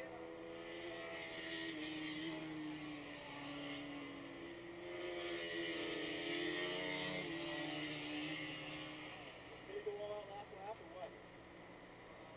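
A pack of Honda VF500F Interceptor racing motorcycles, 500cc V4 engines at high revs, heard at a distance. The engine sound swells twice with the pitch sliding slowly down, then fades about nine seconds in.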